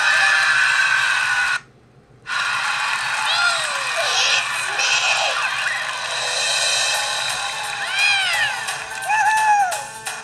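Children's TV show music playing through a portable DVD player's small speaker, sounding thin with no bass. A song ends in a short silent gap about a second and a half in. Then cartoon interlude music starts, with swooping, sliding tones rising and falling.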